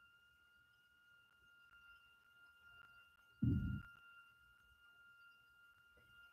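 Near-quiet room with a faint steady high whine at two pitches held throughout, and one brief low, muffled sound about three and a half seconds in.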